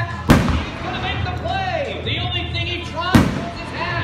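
Two aerial firework shells bursting, sharp booms about three seconds apart, the first just after the start and the second near the end, each with a short echo, over an announcer's voice and music from loudspeakers.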